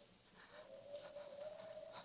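Near silence in an old radio drama recording: faint hiss, with a faint held tone coming in about half a second in and holding steady.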